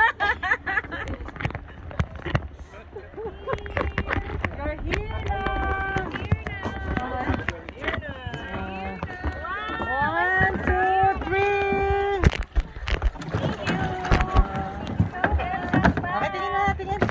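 People's voices talking and calling out, some syllables drawn out long, over a steady low rumble of wind on the microphone, with a few sharp knocks about three-quarters of the way through.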